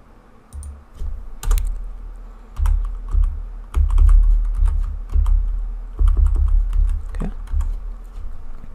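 Typing on a computer keyboard: irregular bursts of keystrokes with low thuds beneath them.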